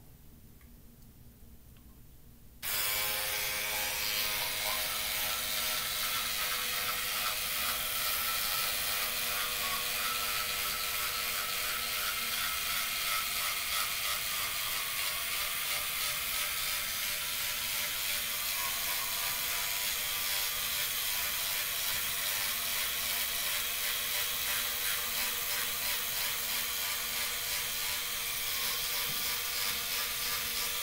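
Electric toothbrush switched on a few seconds in, then running steadily while brushing teeth.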